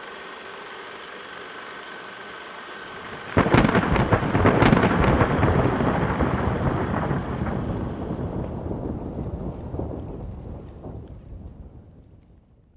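A faint steady background, then about three and a half seconds in a sudden loud thunder-like crash that rumbles and crackles as it slowly dies away over several seconds.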